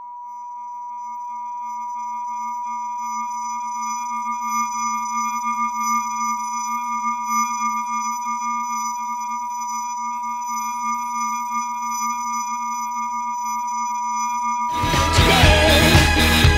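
Electronic drone soundtrack: a steady high sine-like tone over a lower hum and fainter higher tones, slowly growing louder. Near the end loud music cuts in over it.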